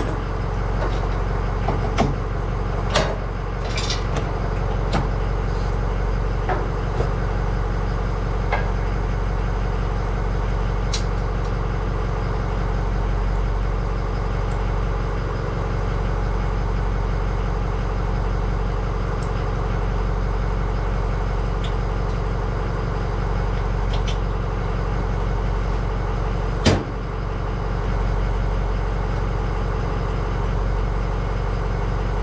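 Pickup truck engine idling steadily while a trailer is hitched to it, with sharp metal clicks and clanks from the hitch coupler and safety chains being handled, several in the first few seconds and one loud clank near the end.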